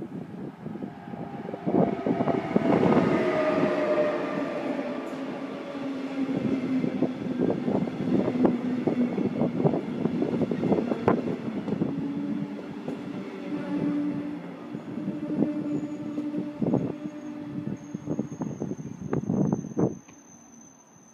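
Electric locomotive and double-deck regional coaches rolling past close by, wheels clicking over rail joints again and again. A set of tones falls in pitch as the locomotive goes by about two seconds in, then a steady low tone carries on under the clatter of the passing coaches.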